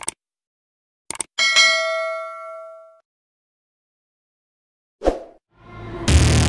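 A single bell-like metallic ding that rings for about a second and a half and fades away, preceded by a couple of short clicks; a short dull thump comes near the end.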